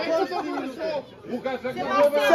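Several people talking at once, with a short lull about a second in.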